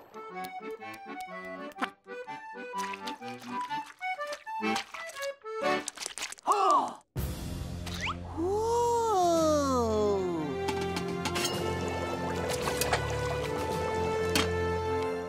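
Cartoon background music of short, separate notes with small comic sound effects. About halfway in, a steady watery bubbling noise sets in under the music, with a few swooping tones over it.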